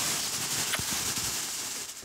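Clothing rustling close to the microphone as a mother and young daughter hug: a steady hissing rustle with a few faint clicks, easing off near the end.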